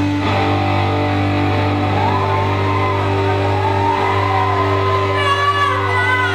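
Live rock band playing through amplifiers, with electric guitar holding steady chords. A sung vocal line comes in about two seconds in.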